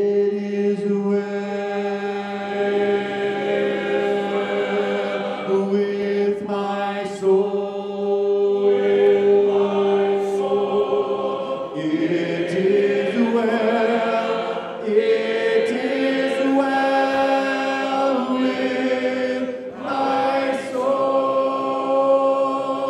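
A congregation singing a hymn a cappella, led by a man's voice through a microphone, in slow phrases of long held notes with short pauses for breath between them.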